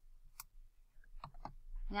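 A few separate sharp clicks of a computer mouse and keyboard in use: one about half a second in, then two close together a little after a second.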